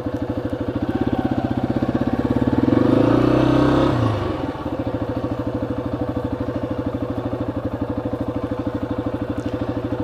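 Yamaha XT250's single-cylinder four-stroke engine pulling away. It revs up and gets louder about three seconds in, then drops back to running steadily at low revs.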